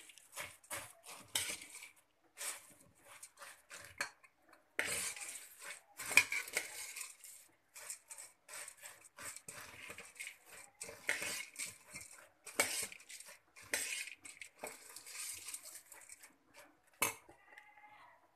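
A steel spoon scrapes and clinks against a pan in quick, irregular strokes as it mixes dry puffed rice with masala.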